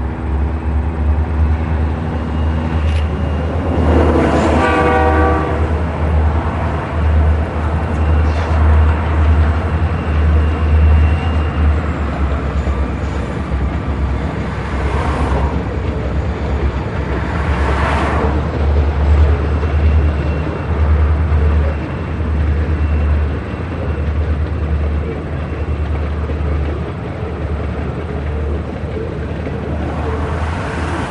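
Freight train rolling past: the trailing EMD diesel locomotives run by, then the freight cars follow with a steady, heavy rumble of wheels on rail. A short pitched sound comes about four seconds in, and there are sharp metallic clanks at about fifteen and eighteen seconds.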